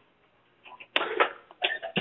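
A brief noisy vocal sound from a person on a telephone line about a second in, followed by a few smaller breathy bursts.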